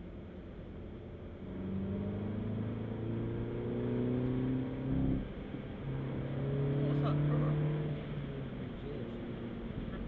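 Mini Cooper S's 2.0-litre turbocharged four-cylinder engine accelerating, heard from inside the cabin: its pitch climbs for a few seconds, breaks with a short sharp sound and drops at a gear change about halfway, then pulls again and eases off near the end.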